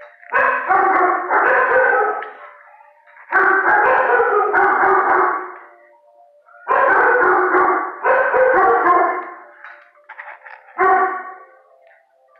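A dog howling in a run of drawn-out calls, each about a second long, mostly in pairs with short gaps between, and a shorter howl near the end.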